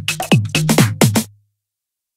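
Tech house drum machine beat, kick drums and percussion hits over a low bass note, playing the track's final bars. It stops about a second and a half in.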